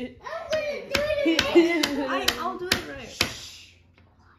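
Hands slapping together in a quick series, about seven sharp smacks roughly two a second, with a voice going on beneath them; the sound dies away near the end.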